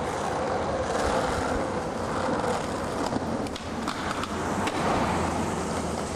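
Skateboard wheels rolling over pavement: a steady rolling rumble with a few sharp clicks along the way.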